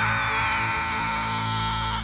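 Live worship band music, with one long held high note over a steady bass.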